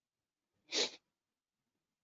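A person sneezing once, briefly, a little under a second in.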